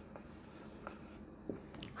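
Faint marker pen writing on a whiteboard, with a few light taps of the tip and a slightly louder tap about one and a half seconds in.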